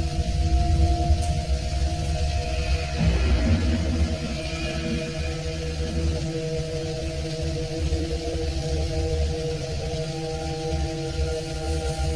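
Dark ambient film score: a low, rumbling drone under several sustained tones, holding steady without a beat.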